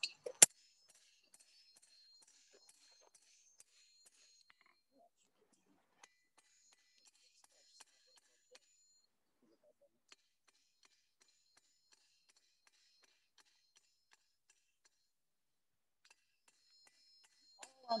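A single loud, sharp blacksmith's hammer strike on metal about half a second in. It is followed by near silence with sparse faint light taps.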